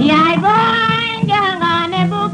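A high voice singing long, wavering held notes in a song, over an instrumental backing.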